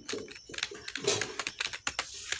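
Computer keyboard keystrokes: a quick, uneven run of key clicks as a line of code is typed.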